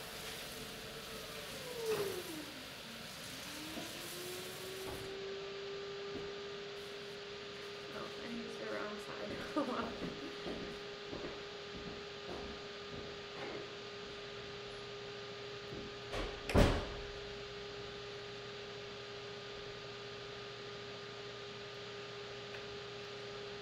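Electric pottery wheel motor whining steadily while the wheel spins, its pitch dropping as the wheel slows about two seconds in and then climbing back as it speeds up again. Scattered scrapes and clicks of a trimming tool on the clay come in the middle, and one sharp loud knock sounds later.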